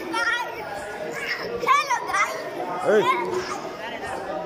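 Crowd chatter with children's high-pitched voices calling out, loudest twice: a little under two seconds in and again about three seconds in.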